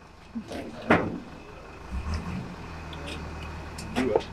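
A motor vehicle's engine runs with a low, steady hum that sets in about halfway through. A short, sharp sound comes about a second in.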